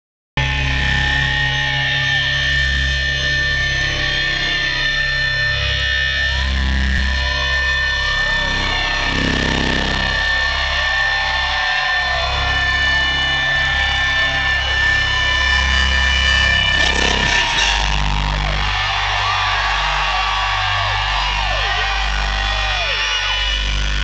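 Rock band playing live through a PA, heard from the crowd: held, sustained notes over a low bass, steady and loud, with voices from the audience.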